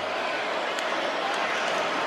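Large stadium crowd noise: a steady, even din of many voices.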